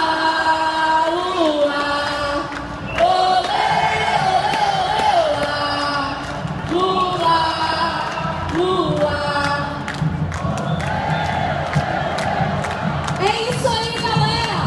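A marching crowd chanting a song in unison, a short melodic phrase repeated every two to three seconds, over the general noise of the crowd.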